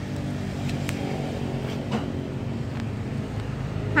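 A steady low motor hum, like an engine running nearby, with a faint click about a second in.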